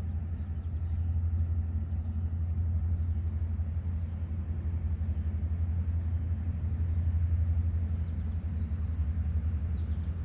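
Tug's diesel engine running as it pushes a barge, a steady low rumble that grows slightly louder as it approaches. A few faint bird chirps sound above it.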